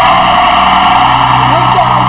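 A loud, steady noise with a low hum under it, over faint voices.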